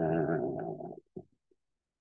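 A man's voice holding one drawn-out syllable for about a second, followed by a brief short vocal sound and then dead silence.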